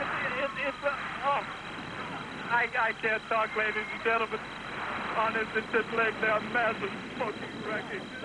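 A man's voice speaking in short, uneven bursts over the hiss and noise of an old recording, with a faint steady high whistle underneath.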